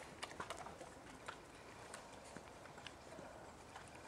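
Puppy lapping from a metal pail: faint scattered clicks and taps, with a quick run of them near the start.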